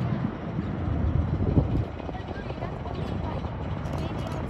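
Jet rumble from the Blue Angels' F/A-18 Super Hornets flying past in a four-ship formation, a deep, steady roar that swells about a second in and then eases.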